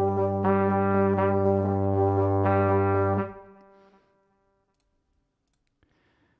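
Sampled brass ensemble from the Native Instruments Valves library (flugelhorn, French horn, trombone, euphonium and tuba) playing a sustained chord with a deep bass. New notes enter about half a second in and again about two and a half seconds in. The chord stops a little past three seconds and fades out within a second.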